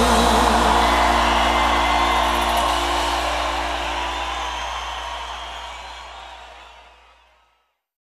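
A live band's final held chord, with a last sung note trailing off about a second in. A crowd then cheers and applauds over the ringing chord, and it all fades out to silence near the end.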